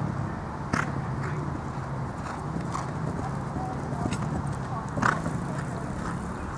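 A horse's hooves thudding on grass turf as it lands over a show-jumping fence and canters on. Scattered hoof hits, the sharpest just under a second in and about five seconds in, sound over a steady low hum.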